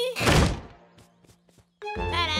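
A heavy cartoon thud: one loud dull impact about a quarter second in that dies away over half a second, followed by a few faint taps.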